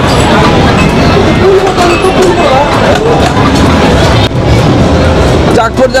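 Loud amusement-arcade din: crowd chatter over a steady rumble of game machines, with a voice calling out near the end.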